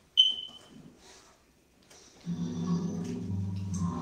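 A short, high ding just after the start that rings away within half a second, then quiet. A little past two seconds in, an organ starts playing sustained low chords.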